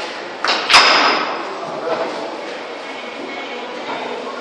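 A shot on a pool (sinuca) table: two sharp clicks about a quarter second apart, the second the loudest, with a short ringing after it, typical of the cue striking the cue ball and the cue ball then hitting an object ball. Voices chatter in the background.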